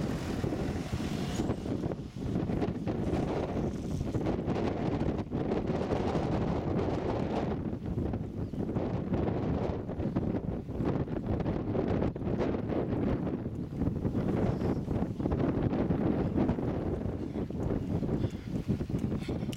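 Wind blowing across the microphone: a steady low rumble that rises and falls with the gusts.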